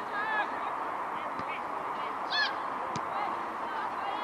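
Brief high-pitched shouts from young players and spectators on a football pitch, the loudest a short call about two and a half seconds in, over steady outdoor background noise.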